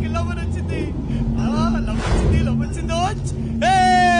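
A man's voice calling out in short exclamations over a steady low music drone. Near the end comes one long, drawn-out shout that slowly falls in pitch.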